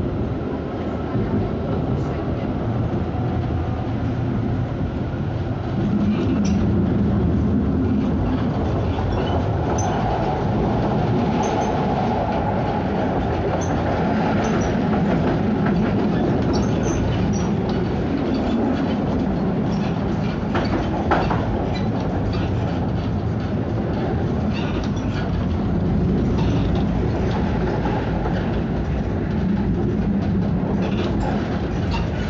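Konstal 105Na tram running along the track, heard from inside the car: a steady rumble of wheels on rails with scattered clicks and rattles, getting louder about six seconds in.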